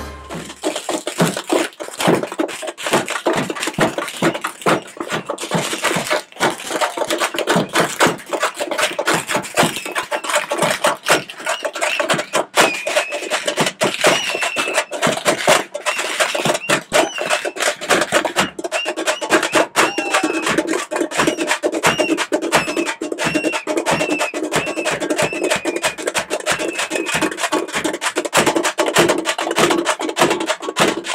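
Tamil parai frame drums beaten with sticks by a troupe in a fast, driving rhythm, with a high wavering tone repeating above the drumming through the middle stretch.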